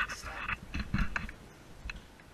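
Light scuffling and rustling as a person shifts about on metal wire shelving among cardboard boxes, with a few small taps and clicks and a couple of dull knocks.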